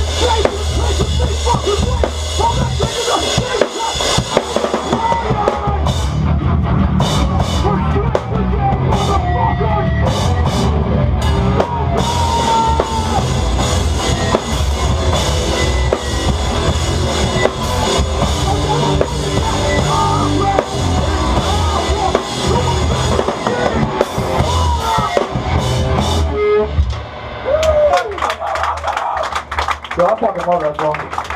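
Hardcore band playing live, loud, with the drum kit up front: bass drum and crashing cymbals over the band. The playing drops off briefly near the end.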